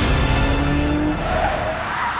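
Aston Martin DB5 skidding in a spin on stone paving, its tyres screeching from about a second in over the engine, with music underneath.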